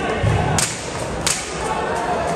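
Strikes landing in a cage fight: a dull thud, then two sharp slaps of glove or shin on bare skin about two-thirds of a second apart.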